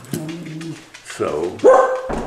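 A dog barking indoors: a short, sharp bark near the end, part of a run of barks just before and after.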